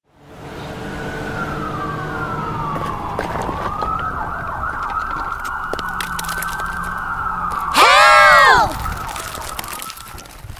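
Cartoon emergency-vehicle sirens wailing over a low rumble: one siren gliding down in pitch, then several wavering together. Near the end a loud, short high-pitched cry rises and falls.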